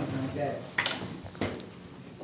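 Two short knocks about half a second apart, near the middle, with faint speech in a small room.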